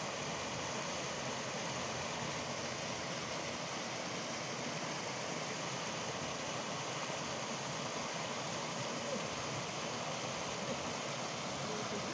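Steady rush of water pouring out through a sluice gate, an even, unbroken noise.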